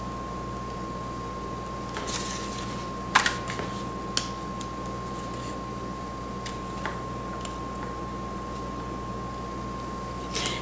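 Fingers and fingernails picking at a roll of double-sided tacky tape to find and lift its end: a few small scratches and clicks, the sharpest about three seconds in, over a steady background hum with a thin high whine.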